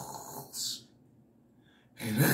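A man breathing noisily, with a short hiss about half a second in, then near silence for the second half.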